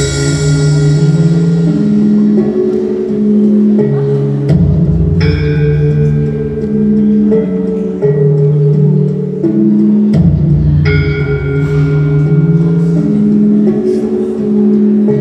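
Gamelan-style music of struck metal instruments: a slow melody of held low notes, with a deep gong-like stroke and high bell-like ringing about four and a half seconds in and again about ten seconds in.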